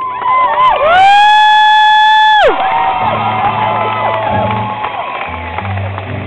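Audience cheering and whooping at a song's end. One loud whoop close to the microphone rises into a held high note about a second in, lasts over a second and cuts off. Many voices cheer and whoop after it.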